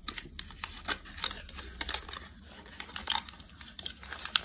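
Paper wrapper of a chocolate bar crinkling and tearing in quick, irregular crackles as it is unwrapped by hand.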